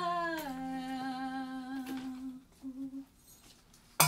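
A woman's humming voice holding one wavering note that slides down in pitch about half a second in, then fades out about halfway through.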